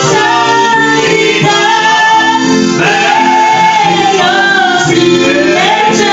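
Music: a woman singing long held notes of an Italian Christian worship song over instrumental accompaniment.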